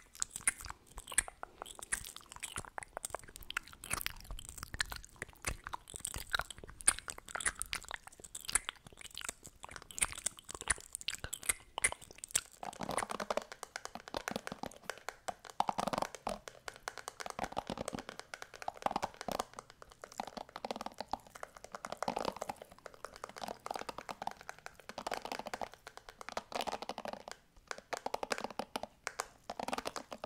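Close-up crackling mouth and lip gloss sounds from lip gloss tubes and wands held at the lips, then, partway through, hairbrushes scratched and brushed over the microphone's mesh grille in repeated scratchy strokes.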